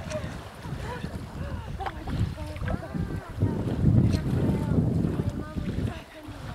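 A person's voice calling out now and then over a low, gusty rumble of wind and water, which is loudest about four seconds in.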